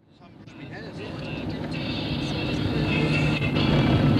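Car engine and road noise heard from inside a moving car, with music playing over it, fading in from silence over the first two seconds.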